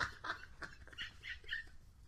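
Quiet, high-pitched wheezing laughter: a few short squeaky bursts of a person laughing almost silently.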